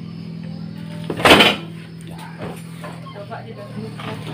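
Carburetted Honda Vario 110 scooter's single-cylinder engine idling steadily while it waits to be ridden off for a test after its side-stand switch was bypassed. About a second in there is one short, loud burst of noise.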